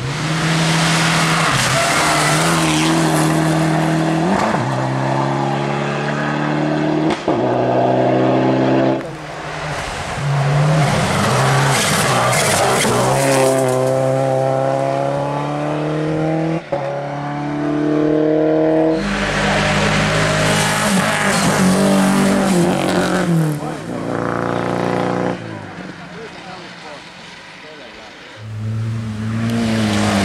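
Rally cars driven flat out on a gravel stage one after another, among them a Subaru Impreza and a Renault Mégane coupé. Each engine climbs in pitch, drops sharply at a gear change and climbs again, over and over. The sound dips quieter a few seconds before the end, then the next car comes on loud.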